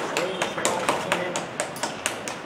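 Scattered hand claps from a small group of people, sharp and uneven, as a ceremonial ribbon is cut, with voices underneath.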